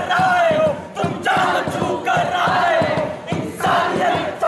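A group of performers shouting a chant together in unison, a loud falling shouted phrase repeated about once a second.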